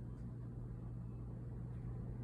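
A steady low hum with a faint even background hiss; no distinct events stand out.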